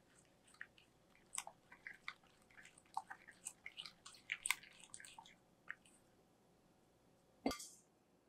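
Silicone spatula stirring thick, creamy batter in a glass bowl: faint wet squishing with scattered small clicks for about six seconds. A single sharp knock comes near the end.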